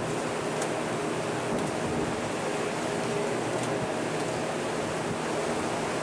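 Steady rush of open-sea waves and wind seen from a cruise ship's deck, with a faint steady low hum underneath.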